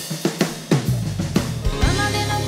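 Live band music led by a rock drum kit: a quick run of kick, snare and cymbal hits, with a low bass note coming in under it about halfway through.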